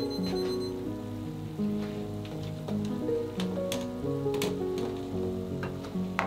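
Background music with a stepping melody of held notes, over scattered soft pops and spatters from tomato sauce simmering in an aluminium frying pan.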